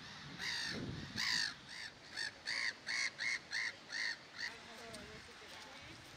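A crow cawing: two longer caws, then a quick, even series of about seven shorter caws, stopping about four and a half seconds in.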